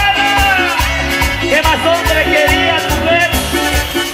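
Band playing an upbeat Latin dance tune, with a steady pulsing bass beat and a lead melody that bends in pitch.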